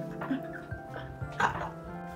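Background music with a woman's two short, excited wordless squeals.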